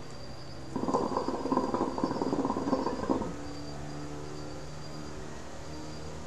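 Hookah water bubbling during a long draw on the pipe: a fast, even gurgle that starts about a second in and stops after about two and a half seconds.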